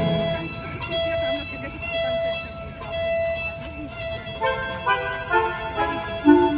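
Recorded dance music played over PA loudspeakers. A string melody holds a few long notes, then breaks into a quicker run of short notes about four and a half seconds in.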